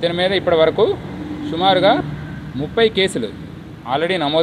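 Speech only: a man talking in short phrases with brief pauses between them.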